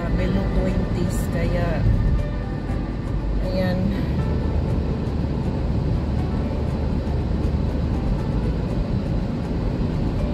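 Steady low road and engine rumble heard inside a car driving on a cleared, slushy street. A voice or music is heard over it in the first few seconds.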